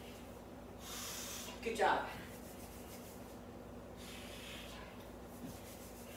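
A woman breathing hard while doing squats. A hissing exhale comes about a second in, followed by a short voiced exhale that falls in pitch. Another breath comes a little after four seconds.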